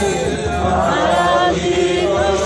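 Devotional kirtan: voices chanting a mantra in song, with a mridanga drum beating underneath.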